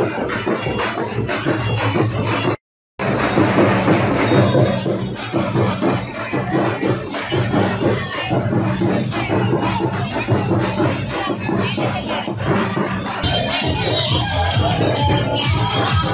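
Loud festival procession music with steady drumming and a crowd shouting. It cuts out completely for a split second about two and a half seconds in.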